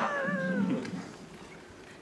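A man's short, high-pitched falsetto cry, falling slightly in pitch and lasting under a second, set off by a sharp click at its start: a comic vocal reaction of stunned surprise.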